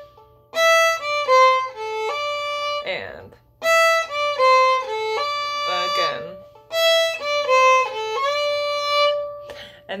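Solo fiddle played slowly, the same short phrase three times over: a run of bowed notes, each time ending on a long held note. This is the closing measure of a reel, bowed with a slur from A to D.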